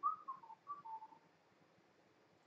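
A person whistling a quick phrase of five notes, stepping down, up again, and down to a longer final note, lasting about a second and a quarter.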